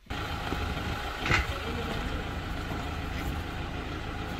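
Vehicle engine idling steadily, with a short louder knock just over a second in.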